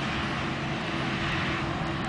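A motor vehicle engine running steadily close by, a constant low hum under a wash of steady noise.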